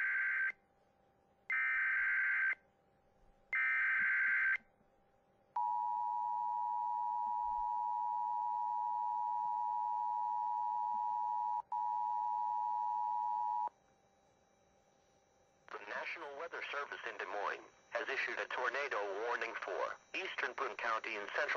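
Emergency Alert System activation for a tornado warning. It starts with three short bursts of warbling SAME header data tones about a second apart, then the two-tone EAS attention signal held steady for about eight seconds with a brief dropout. About four seconds from the end, a voice begins reading the warning message.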